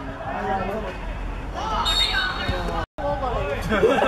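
Voices of players and spectators calling and chattering over a steady low rumble. The sound drops out for a moment about three seconds in, at an edit cut.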